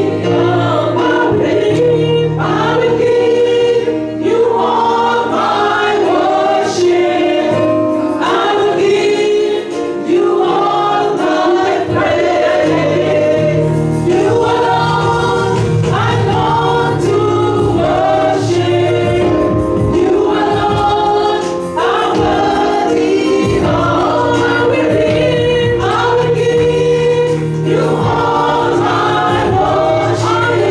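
Gospel praise-and-worship singing: several voices sing through microphones over held chords and a bass line from a Yamaha electronic keyboard.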